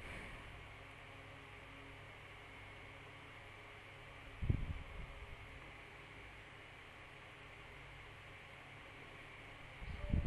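Faint steady hiss and low hum of background noise on a video-call line, with one brief low sound about four and a half seconds in.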